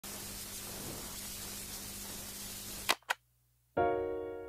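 Steady hiss with a low hum, cut off by two sharp clicks about three seconds in; after a short silence an electric piano chord starts near the end and rings on.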